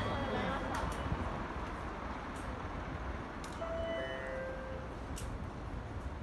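Urban ambience around a train station at night: a steady wash of city noise with faint voices in the background, a few light clicks, and short electronic beep tones at a few pitches around the middle.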